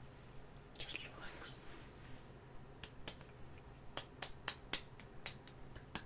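Quiet close-up ASMR hand sounds: a brief breathy rustle about a second in, then a run of soft, quick clicks, about three or four a second, through the second half.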